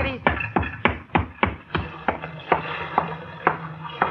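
Radio-drama sound effect of a boat's motor missing and dying: a run of sharp knocks that slow down, coming further and further apart, over a low hum. The engine is failing and stalling.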